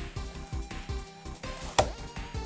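Background music with a steady beat, and near the end a single sharp snap of cardboard as the Elite Trainer Box lid is pulled open.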